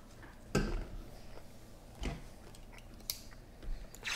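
A few soft knocks and rustles from cardboard trading-card boxes being handled, with a sharper click near the end and quiet between them.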